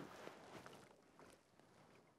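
Near silence, with a soft click at the start and a few faint ticks.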